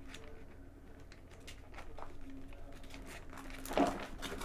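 Pages of a thick Bible being turned and rustled: a scatter of soft, papery flicks, with one louder sound near the end.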